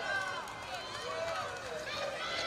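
Faint, distant voices calling out over the steady background noise of an outdoor football pitch.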